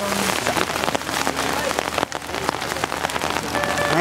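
Rain falling, a dense, steady crackle of drops hitting close by.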